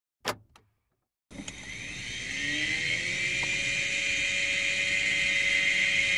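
A record player's mechanism: a click, then from about a second in a steady motor whir with tones that climb at first and then hold, as the grey pickup arm is brought over a spinning 45 rpm single.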